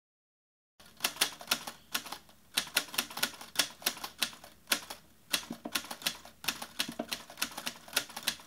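Typewriter key strikes used as a sound effect: a run of irregular sharp clicks, about three or four a second, starting about a second in.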